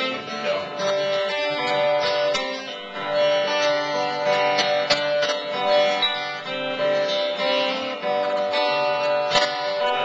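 Steel-string acoustic guitar strummed, chords ringing on between strokes in an instrumental passage.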